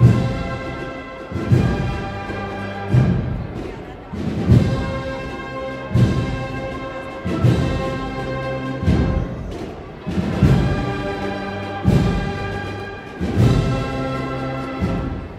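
Brass band playing a slow processional march: held brass chords over a heavy drum beat about every second and a half.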